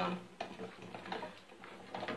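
Wooden spoon tapping and scraping against the inside of a metal saucepan while stirring melting beeswax in oil: a handful of light, irregular clicks.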